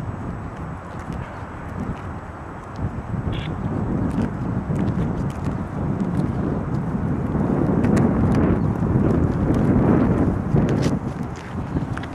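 Wind buffeting the camera microphone outdoors: an uneven rumble that grows stronger in the second half, with scattered light clicks.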